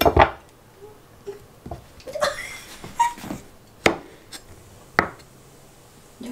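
Kitchen knife cutting a mango on a wooden cutting board: about five sharp knocks of the blade on the board, roughly a second apart, with a brief scraping slice between them.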